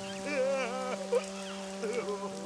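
Cartoon soundtrack: a steady held music chord with a wavering, quavering cry from a sad cartoon dragon over it during the first second.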